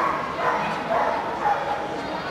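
A dog yipping, four short high calls about half a second apart, over the murmur of people talking.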